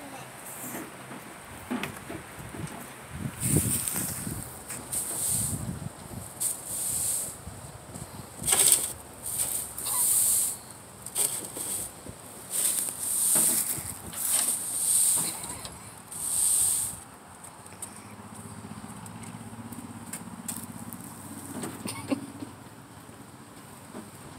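Straw broom sweeping loose hay on a concrete floor, a series of rough swishes about once a second. Near the end the sweeping stops and a faint steady hum remains.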